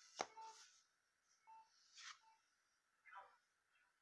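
Near silence, broken by a single light tap and a few faint rustles as a comic book is laid flat on a table, with a few faint short beeps.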